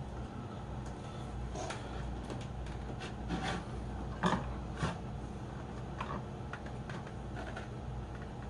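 Hands handling the plastic filter parts and air hose inside an empty glass fishbowl: a few light clicks and knocks spread over several seconds, over a steady low hum.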